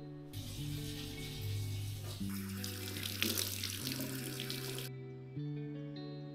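Tap water running into a bathroom sink, starting just after the start and shutting off suddenly about five seconds in, under background guitar music.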